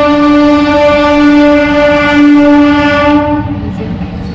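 Train horn sounding one long, steady blast on a single pitch, cutting off a little over three seconds in, with a low rumble underneath.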